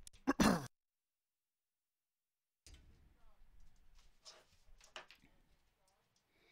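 A man's brief wordless vocal sound, picked up close on the race caller's microphone, in the first moment. The sound then cuts to dead silence for about two seconds, then returns as faint, indistinct background noise with a few soft clicks.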